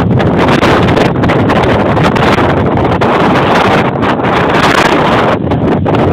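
Strong wind, around 50 miles an hour, buffeting the microphone: loud, continuous wind noise.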